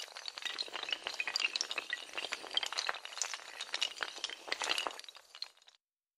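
Sound effect of many small hard tiles toppling in a chain like dominoes: a dense, quick run of clicks and clinks. It opens with a sharp hit and cuts off suddenly near the end.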